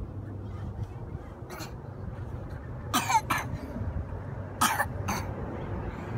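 A person coughing: a couple of short coughs about three seconds in and another pair near five seconds, over a steady low rumble.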